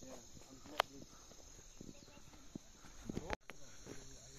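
Faint steady chorus of insects in hillside forest, a continuous high-pitched buzz. A single sharp click cuts through it just under a second in.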